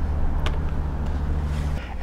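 A steady low hum that drops away just before the end, with a single sharp click about half a second in.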